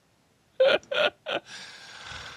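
A person laughing: three short voiced bursts of laughter after a brief silence, then a long breathy exhale.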